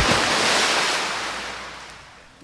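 A rushing surf-like swoosh, such as an ocean wave sound effect, that fades out steadily over about two seconds as the intro music ends.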